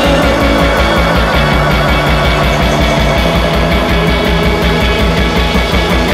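Psych-rock band playing an instrumental passage with no vocals, driven by a fast, even low pulse under dense guitars.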